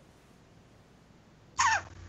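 A pause of near silence, then near the end a short vocal sound from a person, falling in pitch, just before they begin to speak.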